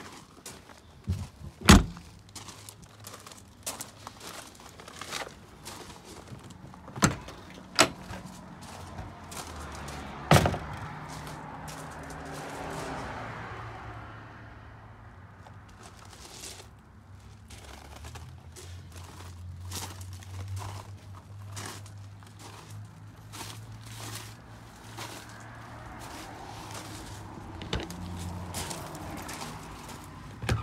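Several sharp thunks and clicks from RV doors and latches being opened and shut. The loudest comes about two seconds in, with more around seven, eight and ten seconds, and small clicks and handling noises between.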